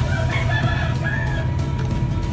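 A rooster crowing once, a single drawn-out call of about a second and a half, over a steady low hum.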